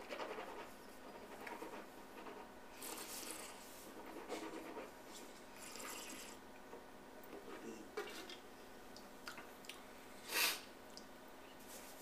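Quiet wine-tasting mouth sounds: sipping a white wine, drawing air over it and breathing out, in soft scattered breaths, with a short, louder breath near the end.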